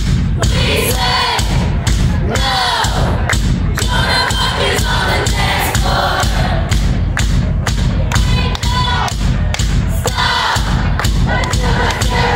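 A live pop-rock band performing, recorded from the audience: sung vocals over a heavy, steady drum beat with a dense, loud low end.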